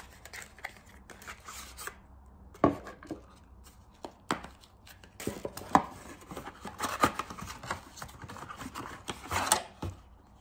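Hands opening a thin paperboard product box and setting a dropper bottle and boxes down on a wooden table: papery rustling and scraping with several sharp knocks, the loudest about two and a half seconds in and near six seconds.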